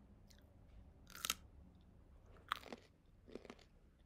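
A few faint, short crunching noises, the clearest a little over a second in and the others near 2.5 and 3.5 seconds.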